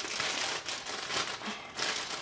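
Packaging crinkling and rustling in bursts as a pack of baby clothes is opened and handled by hand.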